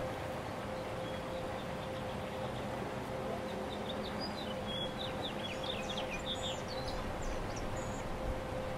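Outdoor ambience: small birds chirping in short, rapid calls from about three and a half seconds in, over a steady background noise and a faint continuous hum.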